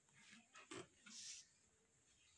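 Near silence: room tone with a couple of faint, soft rustles of a saree's fabric being handled and unfolded, one about a second in.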